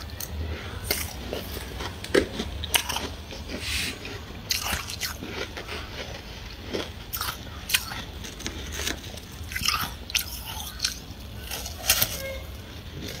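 Freezer frost being bitten and chewed close to the microphone: a run of irregular crunches.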